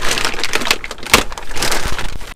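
Clear plastic wrapping crinkling and rustling as hands pull it off a new battery: a dense, irregular run of crackles.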